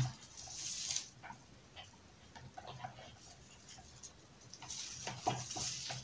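Raffia being wound around a young pine branch by hand: soft rustles near the start and again near the end, with scattered faint ticks between them.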